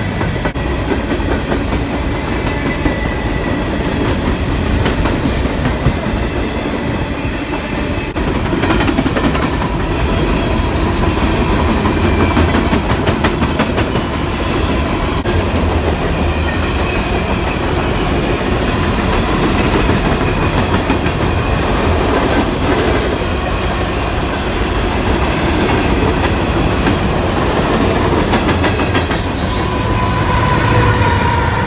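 Freight train of covered hopper cars rolling past at close range: a steady wheel-and-rail rumble with rhythmic clickety-clack as the wheels cross rail joints, getting a little louder about eight seconds in.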